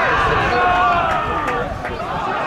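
Football crowd shouting, many voices at once, louder in the first second.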